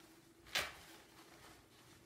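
A single short rustle about half a second in as a hand works in a vinyl pocket chart, over a faint steady room hum.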